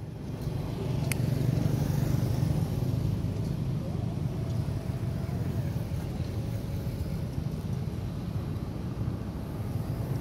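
Road traffic: a steady low engine rumble that swells about a second in, as a vehicle such as a motorbike passes, then carries on steadily.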